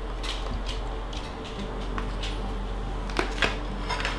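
A few light clicks and taps of food and containers being handled on a kitchen counter as roast beef slices are laid on a sandwich, with a pair of sharper clicks about three seconds in, over a steady low hum.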